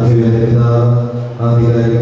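Liturgical chant: a man's voice sings long held notes on a nearly steady pitch, breaking off briefly about a second in.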